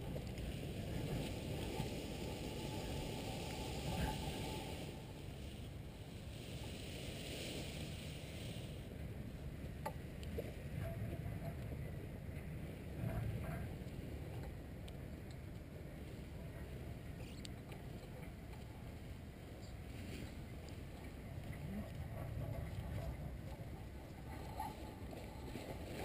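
Wind noise on an outdoor microphone, uneven and without any clear pitch, with a brief stretch of higher hiss about five to nine seconds in.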